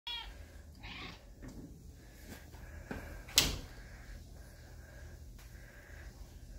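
Scattered knocks and clicks, with one sharp knock a little past halfway that is the loudest sound, and a brief pitched sound right at the start.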